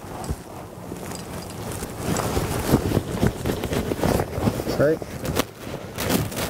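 Nylon climbing cord rustling and scraping as it is handled and tied into an overhand knot, with scattered small clicks.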